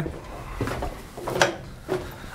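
Footsteps going down wooden stair treads: a few short wooden knocks, the loudest about one and a half seconds in.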